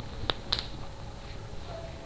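A cotton dress being handled and spread out on a tiled floor: faint rustling, with two short sharp snaps in the first half-second.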